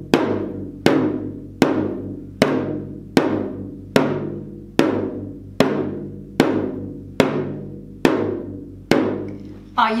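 Toy drum beaten with sticks in a slow, steady marching beat, about one stroke every 0.8 seconds, each stroke ringing out and fading before the next.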